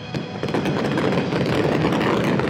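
Aerial fireworks bursting and crackling in a dense, rapid run of pops, over a low rumble.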